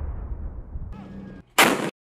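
Rolling echo of an M1 Abrams tank's main-gun shot dying away, then a second sharp, loud report about a second and a half in that cuts off suddenly.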